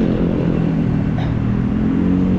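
A motor vehicle engine running steadily close by in road traffic, over a low rumble of wind on the microphone.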